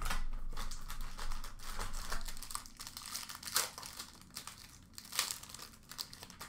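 Clear plastic wrapping crinkling and tearing as it is pulled off a hockey card box, with sharper crackles about three and a half and five seconds in.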